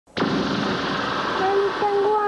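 A steady hiss that starts suddenly, joined about a second and a half in by a person's voice holding one long note.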